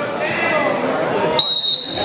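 Wrestling referee's whistle, blown once about one and a half seconds in: one high steady note lasting just under a second, over voices in the gym.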